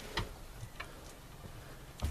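A few light, irregular clicks and taps of puppies' paws and claws moving on wooden floorboards.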